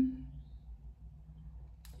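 A woman's short, closed-mouth "mm" at the very start, then quiet room tone with a low steady hum.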